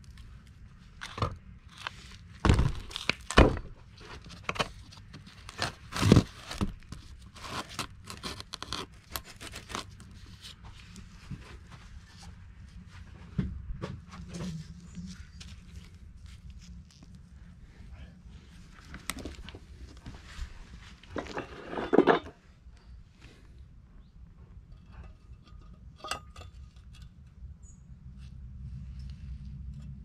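Scattered knocks, clicks and scrapes of metal tractor water-pump parts being handled, loudest in a few sharp knocks early on and a longer scrape about three-quarters of the way through, over a steady low hum.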